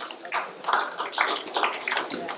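A small audience applauding: a quick, uneven patter of many separate hand claps.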